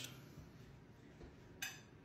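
Near-silent room tone with a single brief clink near the end: a pan being taken from a dish rack.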